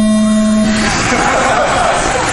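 Race-start tone from the timing system, a steady low beep that cuts off about a second in. It gives way to a busy whir as the Mini-Z cars' small electric motors pull away.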